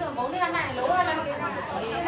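Speech: a woman speaking Burmese, with other voices chattering behind her.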